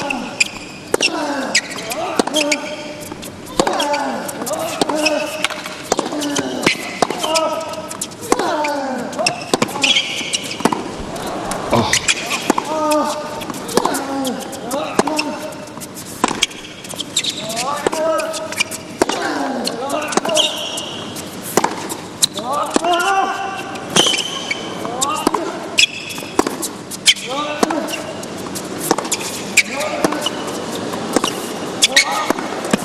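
Tennis rally on a hard court: a steady run of racquet strikes and ball bounces, with a player's short grunt falling in pitch on nearly every shot, about once a second.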